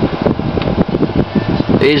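Cooling fan running with a loud, uneven rush of air, heaviest in the low end.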